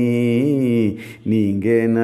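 A man singing slow, long-held notes of a song, breaking off about a second in and coming back in shortly after.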